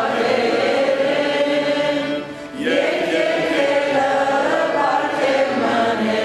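A priest chanting a prayer in Armenian, in long held notes that move slowly in pitch, with a brief pause for breath about two and a half seconds in.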